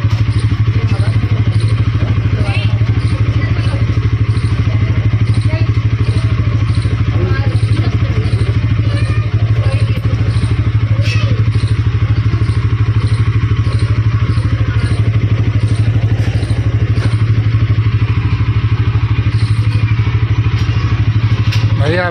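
Bajaj Pulsar N160's single-cylinder engine idling steadily, a low even putter.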